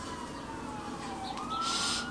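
A faint emergency-vehicle siren wailing: one thin tone slides slowly down in pitch, then jumps up about one and a half seconds in and holds higher, still rising.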